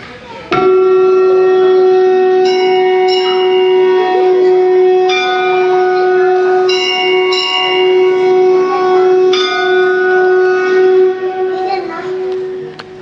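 A conch shell blown in one long, steady note that starts about half a second in, with bells struck and ringing over it several times.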